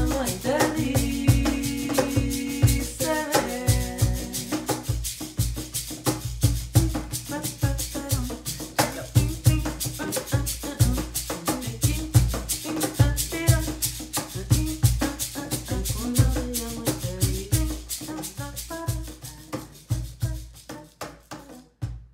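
Cajón strokes with deep bass thumps and a hand shaker keep a steady rhythm. Women's voices hold wordless sung notes over the first few seconds, then fall back to softer vocalising. The whole performance fades out gradually and stops just at the end.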